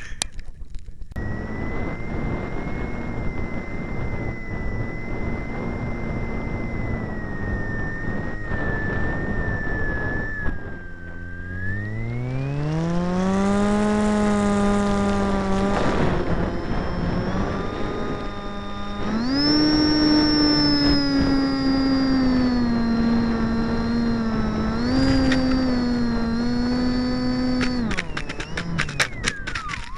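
A radio-controlled model flying boat's motor and propeller running, heard close up. It holds a steady hum at first, drops briefly, then climbs in pitch as the throttle opens. About two-thirds of the way through it steps up to a higher whine that sags slightly and then cuts off at the very end.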